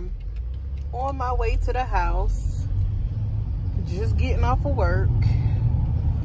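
Steady low rumble of a car being driven, heard from inside the cabin, growing a little louder after about four seconds, under two short stretches of a woman's voice.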